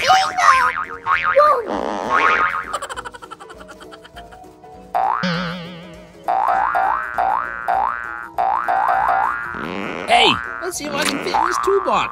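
Cartoon sound effects: a warbling wobble, then a run of quick rising boings, and long falling swoops.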